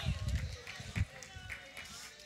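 Dull, low footsteps of a man walking and turning on a carpeted stage, with a sharper thud about a second in.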